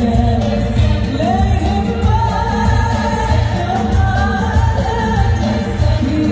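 Live concert music over a large outdoor sound system: a woman singing a long, gliding melody over a band with a steady, heavy bass beat.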